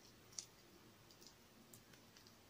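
Shell of a buttered shrimp being peeled by hand: one sharp crackling click about half a second in, then a few faint ticks, over near silence.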